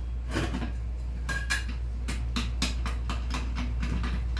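Metal lid of a stainless steel pressure cooker being set on and twisted into place, a run of short metallic clicks and clatters over a steady low hum.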